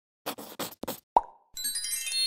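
Animated title-card sound effects: four quick swishes in the first second, then a single cartoon pop a little after a second in. A bright, chiming music sting starts near the end.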